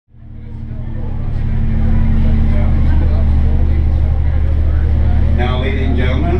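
Tour boat's engine running steadily, a deep even drone heard inside the wheelhouse; a man's voice over a microphone begins near the end.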